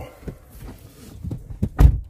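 A few light knocks and then one heavy low thump near the end, the loudest sound, as someone gets into the driver's seat of a car.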